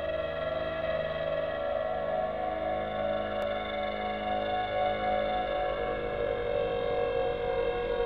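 Ambient music played on a Nord Lead 4 synthesizer: a sustained chord of several held tones with a slow wavering shimmer.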